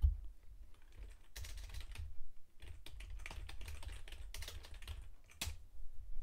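Typing on a computer keyboard: short runs of key clicks with pauses between them.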